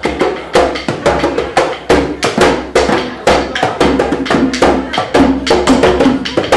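Hand drums played with bare hands, a djembe-style drum among them: sharp slaps and ringing tones in a quick, uneven pattern of about three or four strikes a second.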